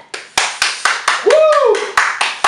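A man clapping his hands hard and irregularly, about four claps a second, reacting to a mouth burning from gargled hot sauce. A drawn-out cry that rises and falls in pitch comes in the middle of the claps.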